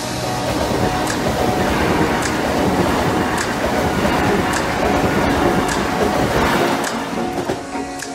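Background music over the rush of an LNER Class 800 Azuma train passing close by at speed. The train noise falls away about six and a half seconds in, leaving the music.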